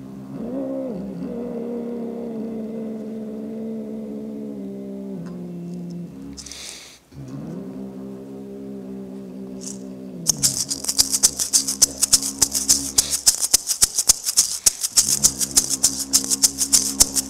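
Didgeridoo playing a steady drone, broken by a quick breath in about six and a half seconds in. From about ten seconds a shaker rattles fast over it, and the drone comes back in near the end.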